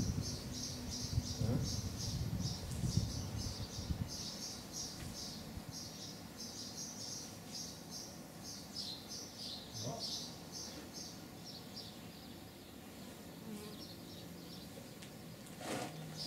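Insect chirping outdoors: a high, evenly repeated chirp, about four a second, that goes on steadily. Low rustling is heard over it in the first few seconds.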